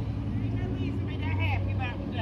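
Steady low hum of a vehicle engine running on the street, fading near the end, with another person's faint voice in the background.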